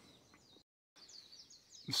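Faint, brief bird chirps in a quiet outdoor pause. The audio cuts out completely for a moment before the chirps begin.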